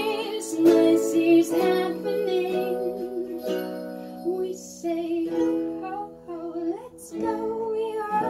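Live acoustic performance of a Christmas pop song: a ukulele is strummed over electronic keyboard chords while a woman sings a wavering melody. Small ankle jingle bells give a few brief jingles.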